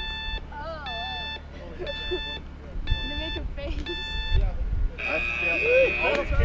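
Electronic race-start timing beeper counting down: five short beeps about a second apart, then one longer, higher-pitched tone that signals the start of the stage.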